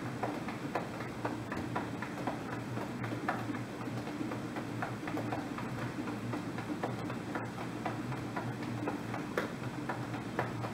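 Hands patting the lower belly in the dahnjeon tapping exercise: a steady run of light slaps, about three a second, over a low steady hum.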